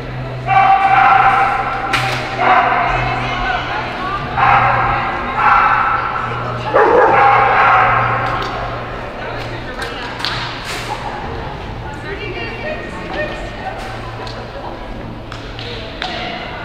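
A dog barking in several excited bursts through the first half, over a steady low hum, with a few sharp knocks later on.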